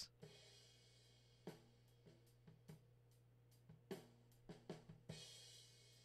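Faint playback of a recorded acoustic drum kit: overhead-mic drum tracks with the kick drum mixed in underneath, scattered hits and a brief cymbal wash near the end. A low steady hum sits under it.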